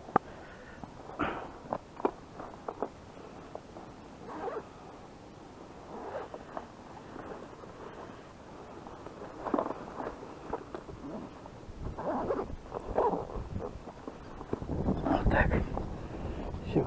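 Gulls calling in short, scattered cries every few seconds. Near the end, rustling and knocking as a backpack and fishing gear are handled close to the microphone.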